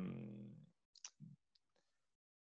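A man's drawn-out hesitation sound trailing off, then near silence with a faint short click about a second in.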